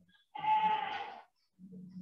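Felt-tip marker squeaking on a whiteboard: one high squeal lasting about a second as the marker is drawn across the board.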